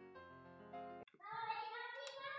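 Soft keyboard music playing slow held chords, which cuts off abruptly about a second in. After it, a faint, high, pitched voice, like singing, is heard.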